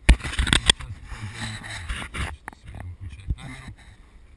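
Inside a car rolling slowly over a rough, wet dirt lot: a loud burst of knocks and rushing noise for about two seconds over the low hum of the engine, then a few lighter knocks.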